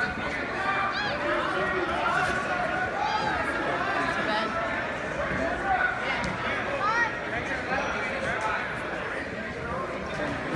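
Many voices in a gymnasium, spectators and coaches talking and calling out over one another in a steady mix with no single voice standing out.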